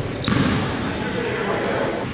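A basketball bouncing on a hardwood gym floor, with a sharp thump about a quarter second in, and players' voices echoing in the gym.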